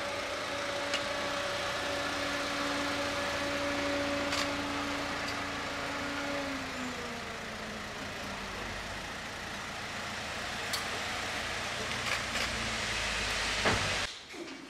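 A vehicle engine running over steady street noise; its note holds steady, then drops in pitch about six and a half seconds in, with a few sharp clicks scattered through.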